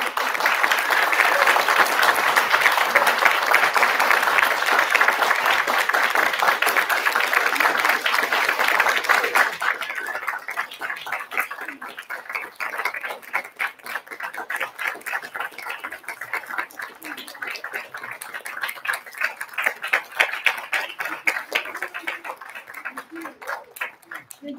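Audience applauding: loud, dense clapping for about the first ten seconds, then thinning out to scattered claps.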